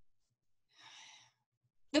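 A woman's audible in-breath, about half a second long, a soft hiss near the middle, followed at the very end by the start of her speech.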